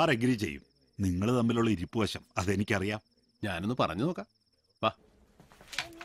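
A cricket chirring steadily in a thin, high, finely pulsed trill under a man's spoken dialogue. Near the end it cuts off abruptly, leaving faint room noise with a few light clicks.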